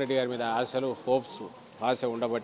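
A man speaking, pausing briefly about a second in and starting again near the end.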